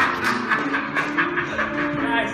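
Laughter in quick pulses that fade out, over held electric keyboard chords.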